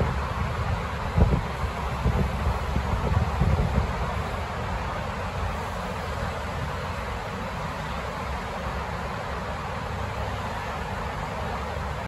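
Steady low rumble and hiss of the Kuala Lumpur monorail, with a few low knocks between about one and four seconds in.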